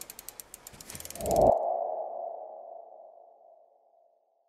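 Animated logo sting sound effect: a run of rapid ticks that quicken over the first second and a half under a swelling whoosh, then a single held tone that fades away.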